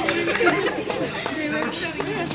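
Chatter of a group of people talking over one another, with no single voice standing out.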